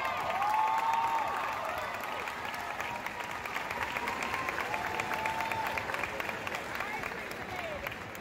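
A large hall audience applauding steadily, with voices calling out and cheering over the clapping.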